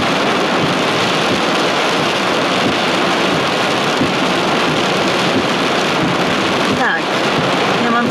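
Heavy cloudburst rain pounding steadily on a car's roof and windscreen, heard from inside the car.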